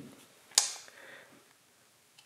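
A short, sharp click about half a second in, with faint handling noise after it, from a digital caliper being set against a small steel part.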